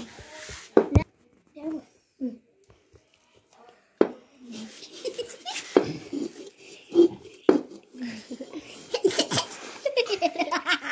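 Children talking and laughing, with a few sharp knocks in between; the voices and laughter grow busier near the end.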